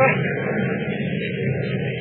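A steady rumbling and hissing noise from an old 1939 radio-drama recording, a sound-effect bed running between the actors' lines.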